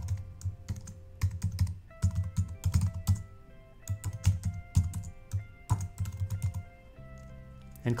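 Typing on a computer keyboard, keys clicking in several quick bursts with short pauses between them. Soft background music with held notes runs underneath.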